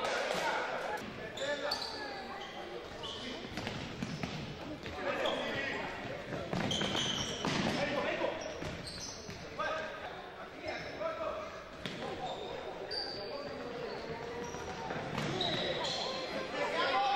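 Indoor futsal play on a hardwood gym floor: the ball being kicked and bouncing, sharp knocks echoing in the hall, with short high squeaks and players' shouts mixed in.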